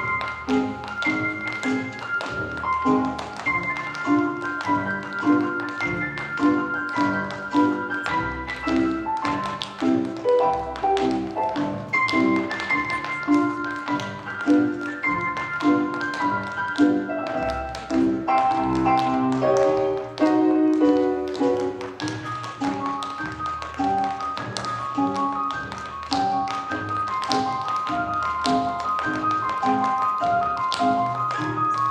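Tap dancing: tap shoes striking a stage floor in quick, rhythmic clicks throughout, over recorded music.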